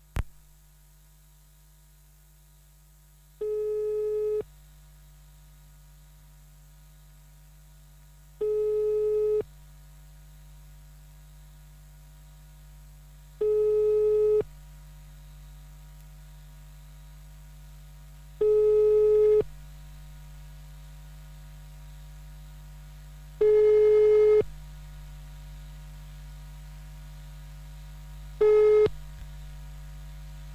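Telephone ringback tone: a call ringing out unanswered, six one-second beeps on one pitch about five seconds apart, growing louder. A steady electrical hum runs underneath, and there is a sharp click at the very start.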